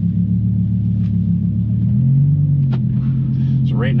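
Lamborghini Huracan LP580-2's V10 engine running at low revs with a steady low drone that steps up a little in pitch about two seconds in.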